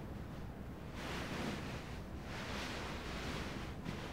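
Bedding and clothes rustling as a man stirs and rolls over on a bed, in three soft swells.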